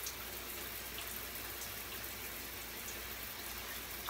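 Steady hiss of running shower water, with faint squishing of shampoo lather as it is worked through hair.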